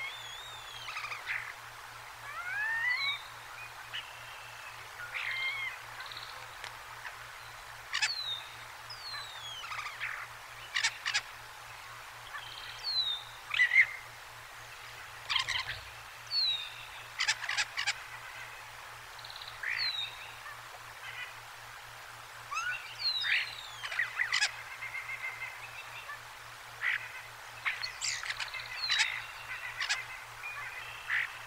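Wild songbirds calling: a short, high falling whistle comes back every few seconds among assorted chirps, clicks and brief rattling runs of notes.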